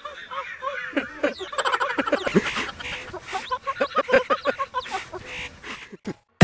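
A man laughing through a surgical face mask, in several runs of quick ha-ha pulses, the longest about four seconds in.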